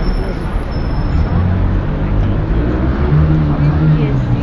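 Chatter of a large outdoor crowd with a motor vehicle's engine running close by, its low drone coming in about a second in and rising slightly near the end.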